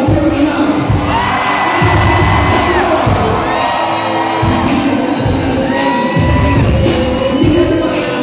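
Live band playing loud amplified music, drums and electric guitar under a vocalist on the microphone, with several long held high notes.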